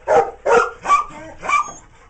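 A dog barking, four short barks in quick succession about half a second apart.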